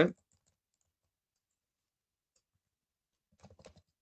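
Near silence, then a quick burst of computer keyboard keystrokes a little after three seconds in.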